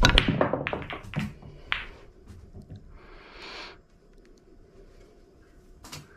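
Break shot in English 8-ball pool: the cue ball smashes into the racked red and yellow balls with a loud crack, followed by a rapid clatter of ball-on-ball clicks for about a second. A few scattered clicks follow as the balls spread and knock off the cushions, and one ball is potted on the break.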